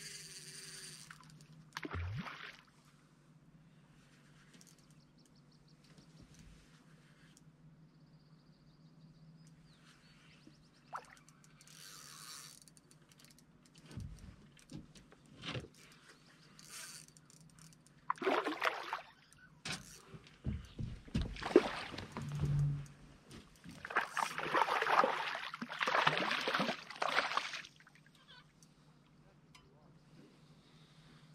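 Bursts of splashing water as a hooked rainbow trout thrashes at the surface while it is played to the side of an aluminium boat. The splashing comes in the second half and is loudest a few seconds before the end. The rest is quiet, with scattered light clicks and knocks.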